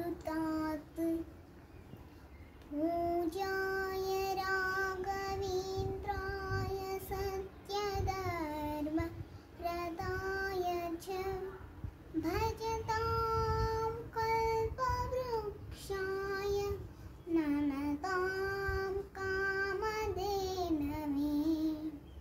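A child chanting Sanskrit stotras in a slow, sung melody. She holds long notes with small pitch glides between them and stops briefly for breath between phrases.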